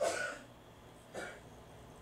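A person clears their throat twice, the first time louder and longer, the second a little over a second later.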